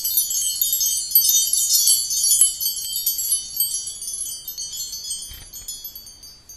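Wind-chime sparkle effect: many high tinkling chime tones layered in a shimmering wash that slowly fades away toward the end.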